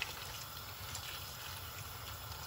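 Hot water poured in a steady stream onto mussels in a large metal pot, splashing over the shells.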